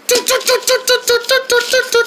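A high voice making a rapid stuttering sound effect, short notes repeated on one steady pitch about seven times a second, as a spell takes effect.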